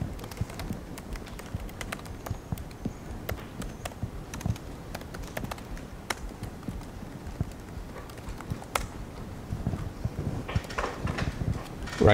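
Laptop keyboard being typed on: a run of light, irregular key clicks as a command is entered.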